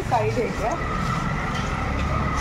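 Street traffic: a vehicle engine rumbling, with a steady, held horn tone starting about a second in and carrying on past the end.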